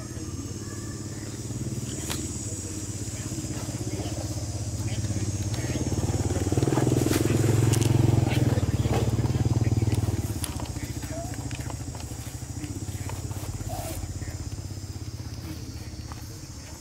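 An engine running nearby, its low pulsing hum growing louder to a peak between about six and ten seconds in, then dropping off. Light crackles sound over it.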